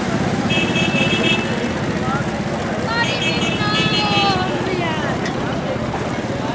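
Busy street traffic with engines running, and a vehicle horn sounding twice, about half a second in and again about three seconds in.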